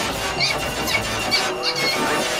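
A dense jumble of several soundtracks playing at once: music under a string of short, high squeals.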